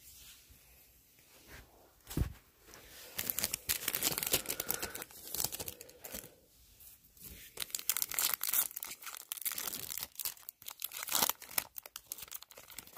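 A foil trading-card pack being torn open and its wrapper crinkled, in two long spells of crackling rustle starting about three and about seven seconds in, after a single soft thump. A clumsy, drawn-out opening that the opener himself calls butchered.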